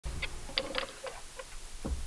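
A few faint, short clicks and taps, about five in the first second and a half, over a low rumble, with a soft low thump near the end.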